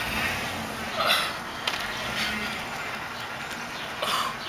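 A man's short, breathy grunts and forceful exhales as he strains through barbell walking lunges, three in quick succession about a second in, over steady outdoor background noise.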